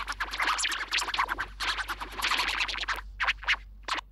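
Voice-changer output playing back: an audio clip run through a wobble pitch-distortion effect, chopped into a rapid scratchy flutter, then three short bursts near the end before it stops.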